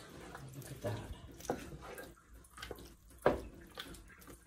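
A wooden spoon stirring a chunky, wet mix of veal, mushrooms and crushed tomatoes in a large non-stick pot: wet squelching and sloshing, with a few knocks of the spoon against the pot, the loudest about three seconds in.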